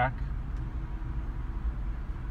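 Faint steady hum of the 2017 Ford Explorer's rear camera washer pump, starting about half a second in and stopping near the end, as fluid sprays onto the backup camera lens. A low steady rumble of the idling SUV lies underneath.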